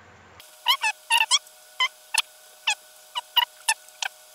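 Fast-forwarded speech: short, high-pitched chattering syllables in quick irregular bursts, starting about half a second in.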